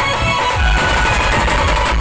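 Loud amplified music mixed with fast, rattling drumming on dhol drums beaten with sticks.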